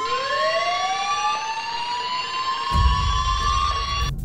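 Emergency siren winding up, one long tone rising slowly and steadily in pitch. A low rumble comes in near the end.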